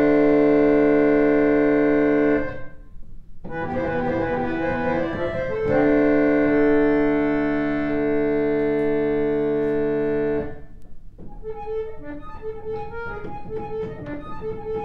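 Two vintage 1950s Yamaha reed organs playing long, held chords of early-music-style harmony, breaking off briefly about two and a half seconds in and again near the ten-second mark. After the second break the playing turns quieter, with short repeated notes.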